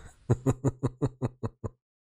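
A man laughing in a quick run of about eight short, evenly spaced bursts that fade and stop shortly before the end.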